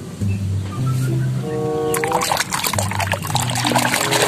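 Background music with a steady bass line. About halfway through, water sloshing and splashing comes in loudly as a hand scrubs a toy in a plastic basin of water.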